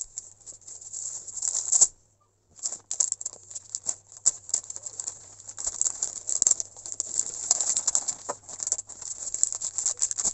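Plastic laminating pouch crackling and ticking irregularly as an A3 pouch laminator's rollers draw it through, on a second pass to press out bubbling. The crackle breaks off briefly about two seconds in, then runs on.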